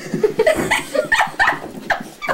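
Chihuahua yipping rapidly, about five short high yips a second, in excitement as it chases a laser pointer dot.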